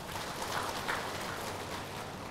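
Room noise of a large hall with a seated audience: an even hiss with a faint murmur.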